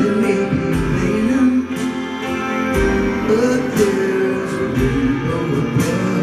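Live band playing a slow ballad, with guitars to the fore over keyboards and strings.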